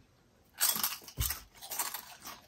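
Thick ridged Ruffles Double Crunch potato chips being bitten into and chewed: a run of crisp, irregular crunches that starts about half a second in.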